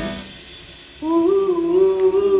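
Live folk band music: the ring of two drum hits dies away, and about a second in a held, gently bending melody note comes in.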